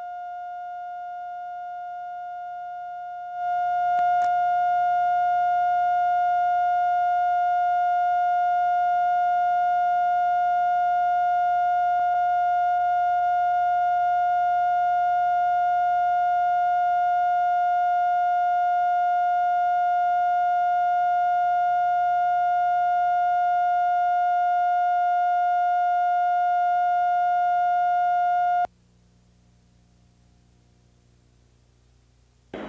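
Steady test tone laid down with colour bars at the head of a videotape, the reference for setting audio levels. It steps up louder about three seconds in, with a brief click just after, and cuts off abruptly shortly before the end, leaving only a faint low hum.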